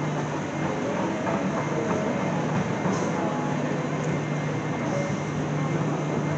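Railway station concourse ambience: a steady low hum under faint, indistinct background voices.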